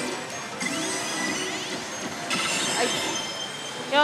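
Electronic music and sound effects from a Daito Giken Hihouden ~Densetsu e no Michi~ pachislot machine, over the dense noise of a pachislot hall. A run of rising tones starts just under a second in, and a brighter layer of effect tones comes in a little after two seconds, as the machine goes into its '秘宝CHANCE' chance effect.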